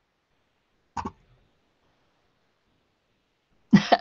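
One short cough-like throat noise from a woman about a second in, with silence around it.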